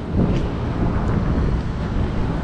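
Harley-Davidson V-twin motorcycle engine running at low speed, with wind buffeting the microphone.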